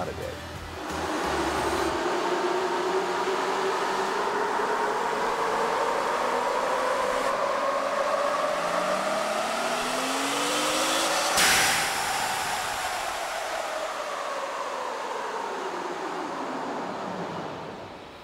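ProCharger-supercharged 3.6 L Pentastar V6 in a Jeep Wrangler making a full-throttle chassis-dyno pull: engine and centrifugal supercharger whine climb steadily in pitch for about ten seconds. A sudden rush of air comes as the throttle closes, then the pitch falls away as the engine and rollers coast down.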